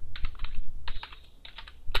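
Computer keyboard being typed on, a quick run of key clicks as a word is entered, then a short pause and one louder keystroke near the end.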